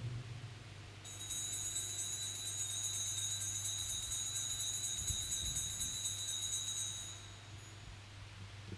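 Altar bells (a cluster of small sanctus bells) shaken in one continuous jingling ring, starting about a second in and stopping near the end. They mark the elevation of the consecrated host. A low steady hum runs underneath.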